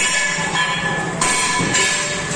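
An 8-inch paper dona (diamond bowl) making machine running, with a steady motor-and-drive hum under a sudden loud stroke of the forming die about every second and a half.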